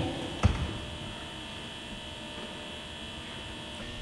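Steady electrical mains hum with faint high steady tones, and a single soft thump about half a second in.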